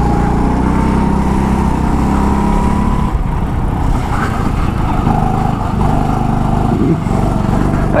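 Go-kart engine running hard at speed, heard onboard; its note climbs slightly for about three seconds, then changes as the throttle eases and picks up again.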